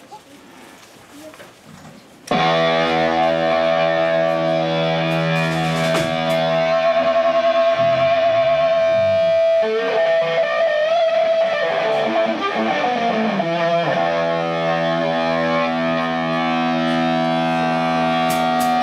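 Amplified electric guitars holding a loud, distorted chord that starts suddenly about two seconds in, after quieter room murmur. A high tone wavers on top, pitches glide in the middle, and there is a short break before the chord is held again.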